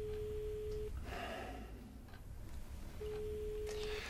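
Telephone ringing tone heard through a mobile phone's earpiece: a steady single-pitched beep about a second long, sounding twice about three seconds apart. The call is ringing out unanswered.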